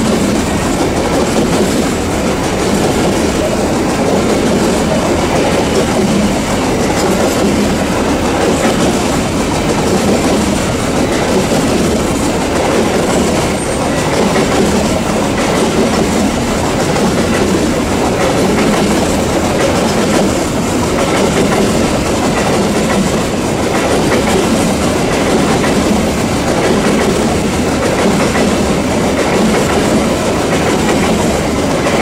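A long string of empty open-top coal wagons rolling past: steel wheels on the rails make a loud, steady, unbroken running noise.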